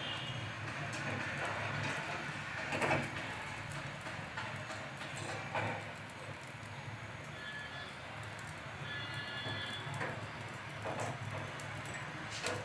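Gas-stove burner flame running steadily with a low hum and hiss under a wire grill of roasting dried fish, with a few light clicks of metal tongs against the grill.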